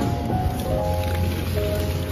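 Tomatoes pouring out of a tipped plastic crate onto a heap, with background music playing.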